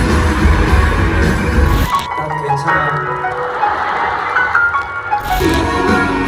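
Rock band music: full band with heavy bass and drums, which drops to a thinner passage without bass about two seconds in and comes back in full about five seconds in.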